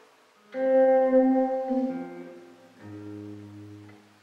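Improvised chamber jazz on hollow-body electric guitar and piano. A loud chord enters about half a second in and rings out, fading over about two seconds. A softer chord with a low bass note follows near three seconds.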